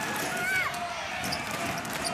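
A basketball being dribbled on a hardwood court over steady arena crowd noise, with a brief high-pitched squeak about half a second in.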